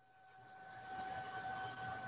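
Steady rushing background noise that swells up over the first second and then holds, with a faint steady high whine underneath.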